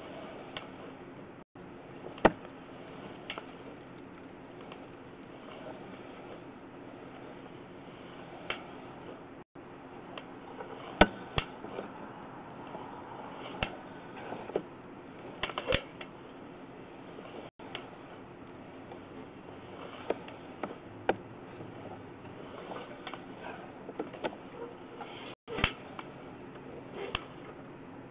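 Irregular sharp clicks and knocks over a steady background hum, from a sewer inspection camera's push cable being pulled back out of the line.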